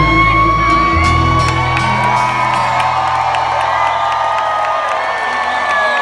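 A live band's last chord ringing out, low held notes that die away near the end, under an audience whooping and cheering with long drawn-out whoops.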